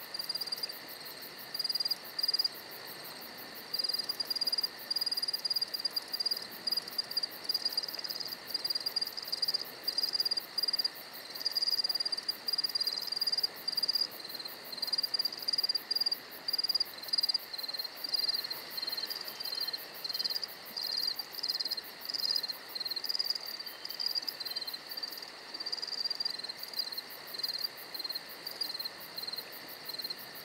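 Crickets chirping: runs of short, shrill chirps over a fainter, very high, fast trill, with a second, slightly lower-pitched chirper joining about halfway through.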